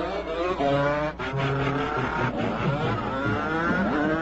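Cartoon soundtrack: music mixed with engine-like revving effects, several tones holding steady and others sliding up and down in pitch.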